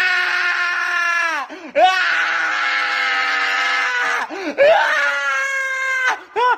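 Human screaming: three long, high screams, each held steady for one to two seconds, with short breaks between them. The middle scream is the longest.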